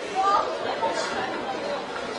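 Indistinct chatter of a group of people, faint voices over a steady noisy background.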